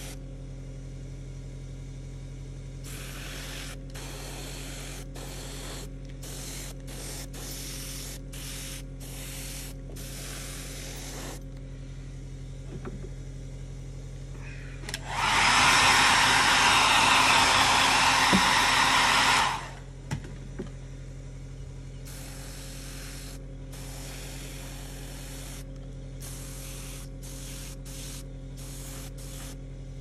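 Airbrush spraying paint in short on-off bursts of hiss over a steady low hum. About halfway through comes a much louder, steady blast of air lasting about four seconds.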